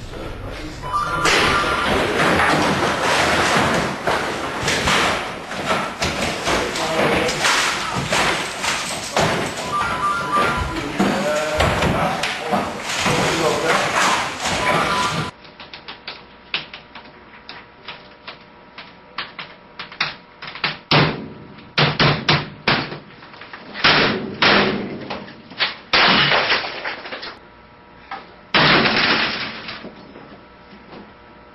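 A stretch of dense clatter mixed with voices, then a series of about eight separate heavy bangs and thuds, one to two seconds apart, typical of office computer equipment being struck in anger.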